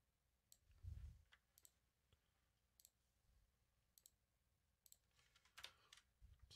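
Faint computer mouse clicks, about eight of them at irregular intervals, as MIDI notes are selected and edited, with a soft low thump about a second in.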